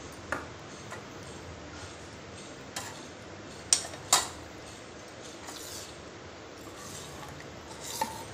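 Stainless-steel kitchenware clinking and rubbing as jaggery syrup is poured from a steel bowl into a steel mesh strainer, with a few sharp clinks, the loudest about four seconds in, over a low steady hiss.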